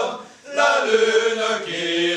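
Five-man male vocal ensemble singing a cappella in close harmony, holding long chords; the voices break off briefly for a breath a fraction of a second in, then come back in together on the next chord.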